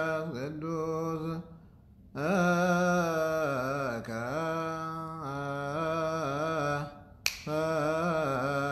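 A man's solo Ethiopian Orthodox liturgical chant in Ge'ez, one voice holding long, ornamented notes. It breaks for a breath about a second and a half in. Near the end there is a single sharp click just before the voice comes back.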